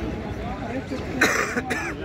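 Crowd of onlookers talking and calling out over one another, with one short, loud, harsh burst from a nearby voice a little past halfway.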